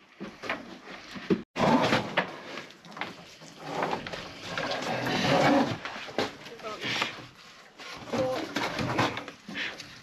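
Indistinct men's voices talking and calling to each other while they work.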